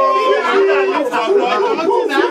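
Several voices chanting and singing together in a victory chant, a man leading into a handheld microphone, with overlapping voices and some long held notes.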